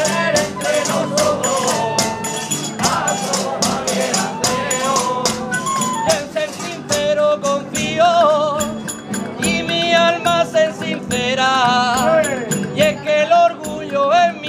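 Traditional Murcian aguilando played by a folk ensemble, with quick, steady percussion strikes throughout. A wavering melody line with vibrato comes to the fore over the second half.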